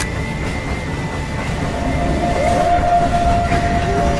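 Trailer sound design: a dense, loud low rumble, with a steady high drone tone coming in about a second and a half in and held to the end.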